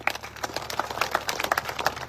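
Audience clapping: many separate, irregular claps, growing denser during a pause in a speech, then stopping suddenly.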